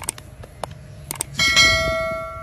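Subscribe-button sound effect: a few sharp mouse clicks, then a bright bell ding about a second and a half in that rings on and slowly fades.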